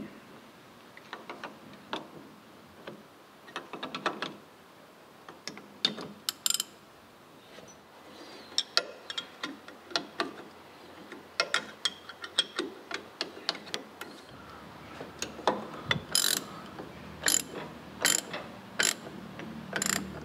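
Spanners and a socket ratchet tightening large bolts and nuts on a steel tractor pump bracket: scattered metallic clicks and clinks, louder and more frequent in the second half.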